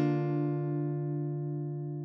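A single acoustic guitar chord, struck right at the start, rings on with its notes held and slowly fades away.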